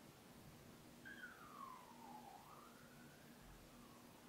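Near silence with room tone, and one faint siren wail starting about a second in that falls then rises in pitch over roughly three seconds.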